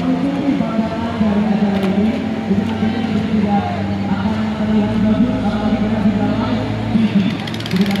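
A voice speaking over background music, with a low engine hum from about five to seven seconds in.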